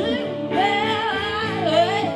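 Live blues: a woman singing a wavering melody to her acoustic guitar, backed by harmonica and a slide guitar played flat on the lap.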